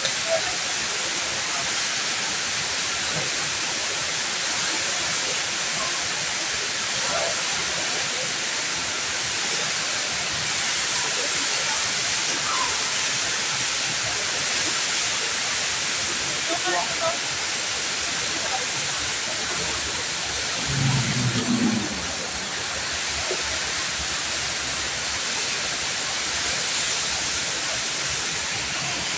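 Steady rushing of a tall indoor waterfall, the Rain Vortex at Jewel Changi, crashing into its pool, with a brief low hum about three quarters of the way through.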